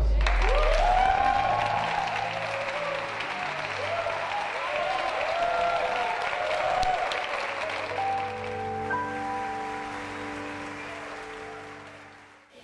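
Studio audience applauding over music. The applause thins out after about eight seconds, leaving held music chords that fade away near the end.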